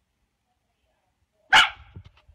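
A dog gives one loud, short bark near the end, a snap in a squabble over a chew toy.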